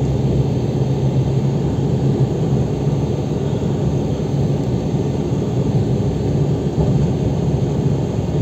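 Steady low rumble of a car driving, heard from inside the cabin: engine and tyre noise on the road.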